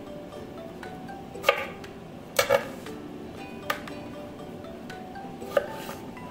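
Kitchen knife slicing raw potatoes and knocking on a wooden cutting board: a handful of sharp knocks at irregular intervals, over soft background music.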